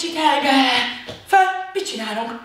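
A woman's voice in short calls, the first drawn out with falling pitch and a shorter one following about a second and a half in.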